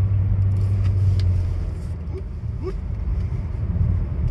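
In-cabin drone of a 2020 Kia Soul EX's 2.0-litre four-cylinder engine and tyres while cruising at about 40 mph. The low hum weakens and gets quieter about two seconds in.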